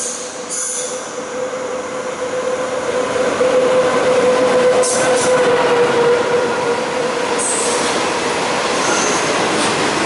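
SS8 electric locomotive and its passenger coaches running through a station at speed, growing louder as the locomotive comes up and passes, then a steady rolling rush as the coaches go by. A steady whine runs through the passing, with a few brief high wheel squeals about halfway and near the end.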